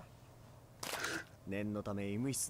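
A man's voice speaking at low level, subtitled dialogue from the anime episode playing, with a brief hiss a little under a second in.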